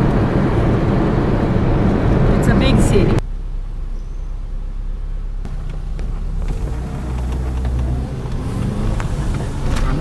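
Car cabin noise while driving at speed: steady road and engine rumble that cuts abruptly about three seconds in to a quieter low engine hum in slower city traffic.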